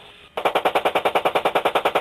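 A long burst of automatic gunfire, a rapid even string of about a dozen shots a second, beginning about a third of a second in.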